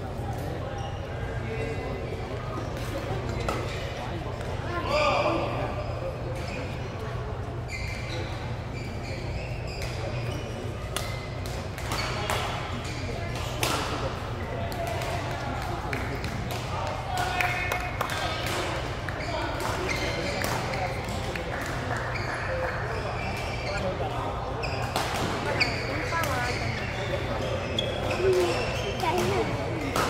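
A badminton match in a large sports hall: sharp racket hits on the shuttlecock and players' footsteps on the court come every second or so, over indistinct voices and a steady low hum.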